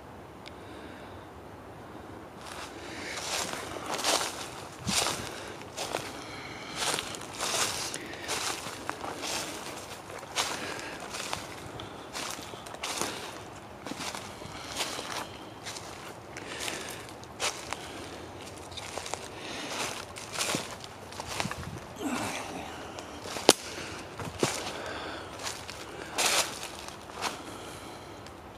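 Footsteps through dry leaf litter and sticks on a forest floor, at a slow, uneven walking pace of about one step a second, starting about two seconds in. One sharp snap stands out about three-quarters of the way through.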